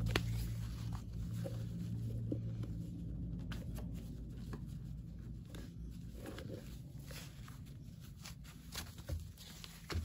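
Soft rustling and handling sounds of slippery fabric being scrunched and pulled along a wooden tabletop, with a few faint small clicks. A low steady hum fades away over the first few seconds.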